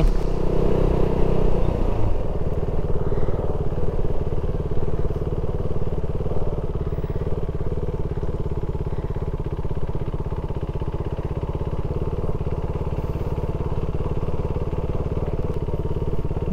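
KTM 390 Duke's single-cylinder engine pulling away, louder for the first couple of seconds, then running at a steady low speed as the motorcycle rolls slowly along.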